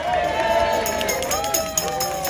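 Several people's voices talking at once, with a few light, high clicks scattered through the second half.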